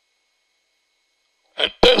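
Dead silence, then a man's voice starts abruptly with sharp, loud bursts near the end.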